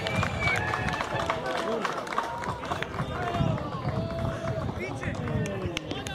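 Several people's voices calling and talking over one another across an open football pitch.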